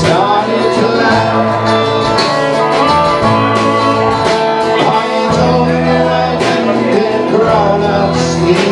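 Live band playing: strummed guitar over long held electric bass notes, with a man singing.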